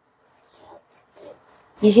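Scissors cutting through a thin sheet of glitter EVA foam: a few short, faint cutting strokes.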